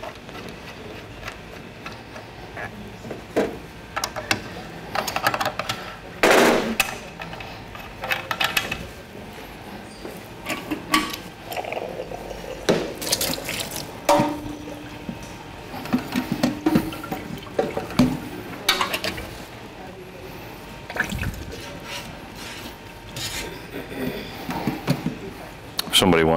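Water running and splashing in a stainless-steel sink as disassembled beer faucet parts are rinsed, with scattered clinks and knocks of metal parts against the sink.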